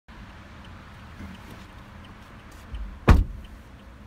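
A car door shutting with one loud thump about three seconds in, heard from inside the 2017 Toyota Corolla's cabin over a low steady hum.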